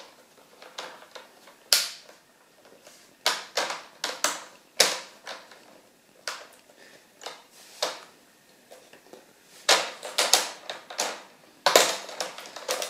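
Plastic screen bezel of a Dell Latitude E6540 laptop being pried off by hand, its retaining clips snapping loose in a string of sharp, irregularly spaced clicks, about fifteen in all.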